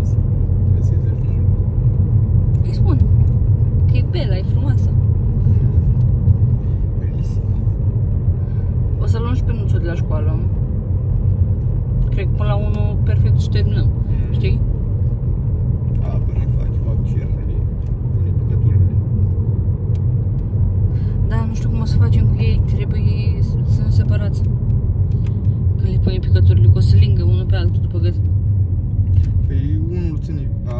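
Steady low rumble of a car's engine and tyres, heard from inside the cabin while driving, with short pitched sounds coming and going over it.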